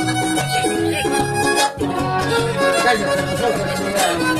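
Huapango (son huasteco) played live by a string trio: a violin plays the melody over a rhythmic strummed guitar accompaniment.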